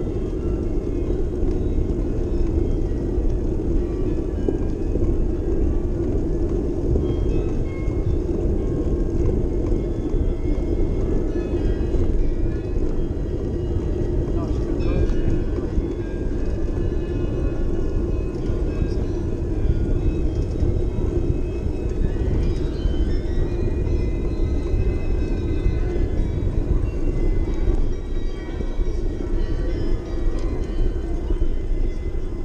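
Steady low rumble of wind and rolling noise on a bicycle-mounted action camera riding through city streets, with faint music over it.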